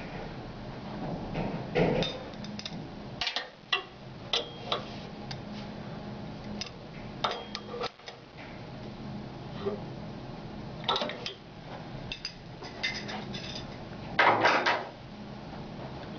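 Two wrenches clinking and scraping against the transducer disc and its nut as the disc is tightened on the stem: scattered metal clicks and taps, with a louder clatter near the end. A steady low hum runs underneath.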